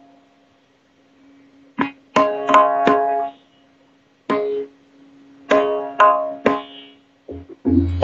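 Tabla playing over a steady drone note: sharp ringing strokes come in short groups with pauses between them, and near the end a deep booming bass-drum stroke is added.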